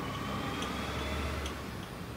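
Steady low machine hum with a faint whine that slowly falls in pitch, and light, regular ticking.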